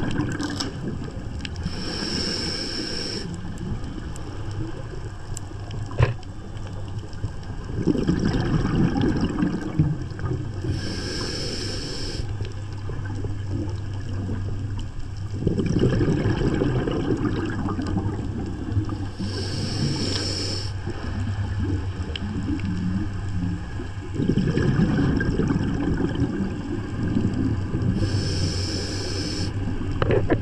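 Scuba diver breathing through a regulator underwater, four breaths about nine seconds apart: each inhale is a hiss of about a second from the demand valve, and each exhale is a burst of rumbling, bubbling exhaust lasting two to three seconds. A steady low hum runs underneath.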